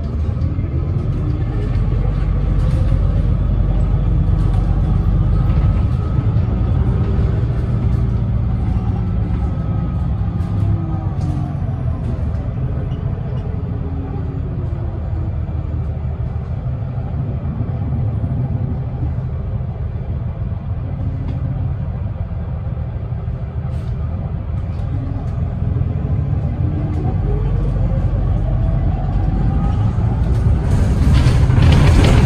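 Interior of a 2010 Gillig Low Floor Hybrid 40' bus under way: a steady low drivetrain rumble with the hybrid drive's electric whine rising in pitch as the bus accelerates in the first few seconds. The whine falls as it slows around the middle and rises again near the end as it pulls away.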